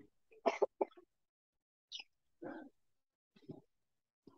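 Short coughs and throat-clearing through a video-call microphone, coming in several brief bursts with dead silence between them.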